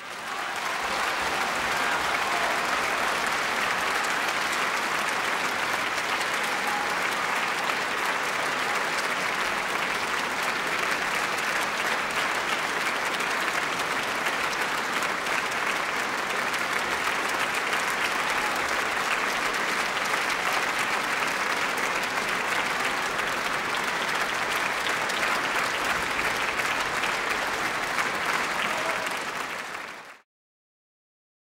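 Large concert-hall audience applauding, a dense steady clapping that breaks out suddenly out of silence and fades away at the very end.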